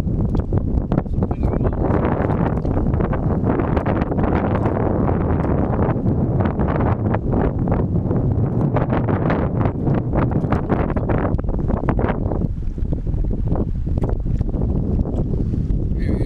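Wind buffeting the microphone: a loud, steady rumble with gusts, thinning somewhat in the last few seconds.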